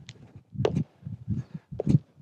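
Feet landing on the floor in repeated lunge jumps, a low thud about every half second, with a few short sharp sounds among the landings.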